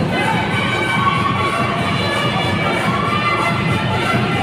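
A large crowd cheering and shouting steadily, with many voices overlapping and music faint beneath.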